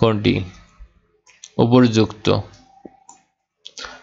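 A man's voice speaking in short phrases, with one sharp computer mouse click a little under three seconds in.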